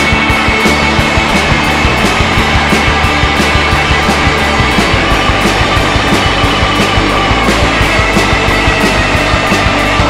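Indie rock band playing live: electric guitars strummed over a steady drum beat, at full volume throughout.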